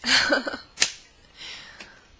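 A short breathy laugh, then a single sharp click a little under a second in.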